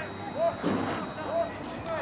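Distant short shouts from football players on the pitch, with a dull thump about a third of the way in.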